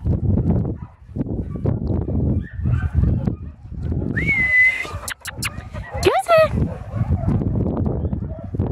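Low wind rumble on the microphone, with one short, steady whistle about four seconds in and a brief call rising in pitch about two seconds later.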